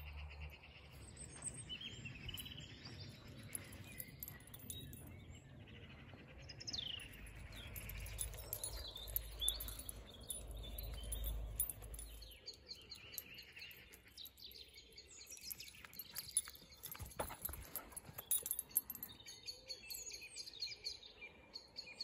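Faint birdsong: scattered short chirps and calls from small birds, with a low rumble that stops about halfway through.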